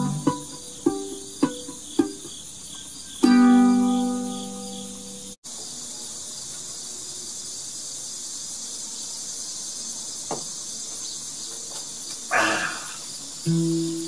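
Ukulele picked notes ending in a strummed chord that rings out over the first few seconds. After a cut, crickets chirr steadily, with a short noise near the end and then ukulele notes starting again just before the end.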